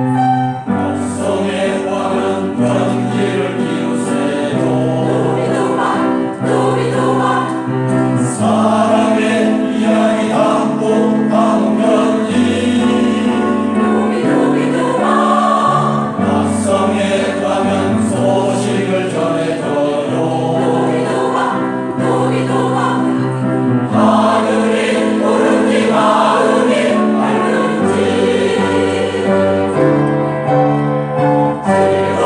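Mixed-voice senior choir, men and women, singing in parts with piano accompaniment.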